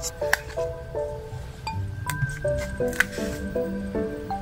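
Soft instrumental background music made of short, stepping notes, over which come a few sharp clicks and small crinkles from tweezers peeling stickers off a sticker sheet; the sharpest click is about three seconds in.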